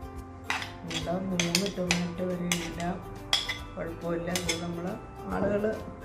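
Stainless steel serving spoon scraping and clinking against a china plate and a salad bowl as chopped tomatoes are pushed off into the bowl, with repeated sharp clinks.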